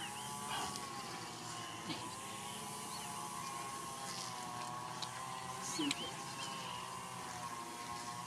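A steady engine drone with a slightly wavering pitch, plus a few faint short clicks.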